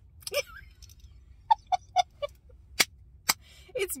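A woman's soft chuckle of four short pulses, about four a second, followed by two sharp clicks.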